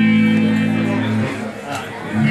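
Live rock band with electric guitars and bass holding a loud chord that cuts off about a second and a half in.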